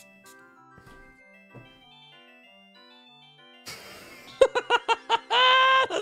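Soft background music with chime-like notes, then about two-thirds of the way in a short hiss from a cologne spray bottle. It is followed by a man's loud reaction to the smell: a few quick vocal bursts and then a held, high-pitched groan.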